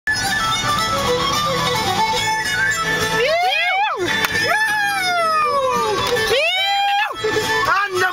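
Music with a stepped melody playing inside a car, then a man wailing along over it in three long swooping cries, each rising and then falling in pitch.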